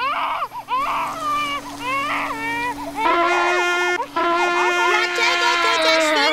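A cartoon baby crying in short wavering wails over a steady hum from a running vacuum cleaner; about three seconds in, a trumpet starts blaring held notes and the sound gets louder.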